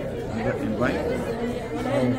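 Several people talking at once in a large hall: overlapping, indistinct conversation.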